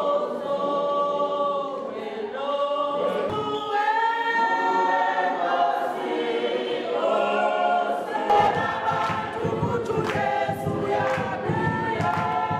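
A group of people singing together unaccompanied, in long held notes. About eight seconds in, a rhythmic beat of percussive knocks joins the singing.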